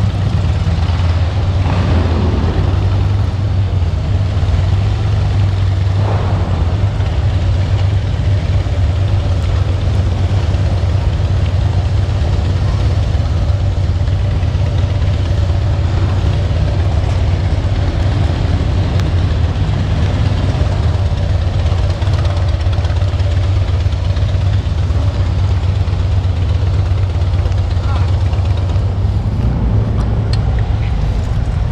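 Harley-Davidson Heritage Softail's V-twin engine running steadily at low speed as the motorcycle rolls slowly through a concrete parking garage, a deep, even engine sound throughout.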